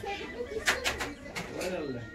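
Indistinct voices of people talking in the background, with a few short, sharp hissing or clicking sounds a little after the first half-second.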